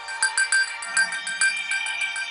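Television programme intro music: a quick run of short, bright, bell-like synthesizer notes repeating about five times a second over a sustained tone.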